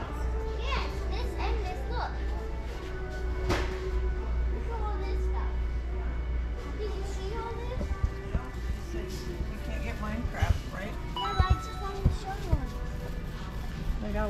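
Busy store ambience: music and the chatter of shoppers and children, over a steady low hum. A few sharp knocks come in near the end.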